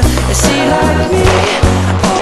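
Background music: an instrumental stretch of a song, with steady sustained bass notes and pitched melody lines.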